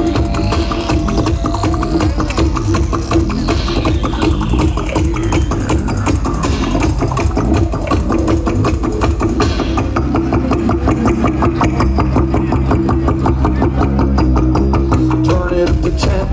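Live music from a homemade Magic Pipe instrument through a PA: a fast, even pulsing rhythm over a steady low buzzing drone. About halfway through the high end drops away and the bass thickens, and the pattern changes just before the end.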